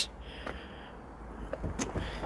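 Quiet background hiss with a few faint, soft clicks, the clearest near the end.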